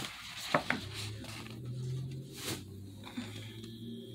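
Handling noise from a cardstock sheet of foil gift-tag stickers being flipped over and held up: two light taps about half a second in and a brief swish near the middle, over a low steady hum.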